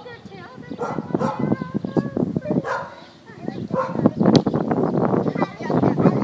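Young puppies barking in many short calls, mixed with children's voices.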